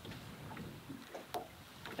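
Quiet lakeshore ambience: a faint, even hiss with a single small click about one and a half seconds in.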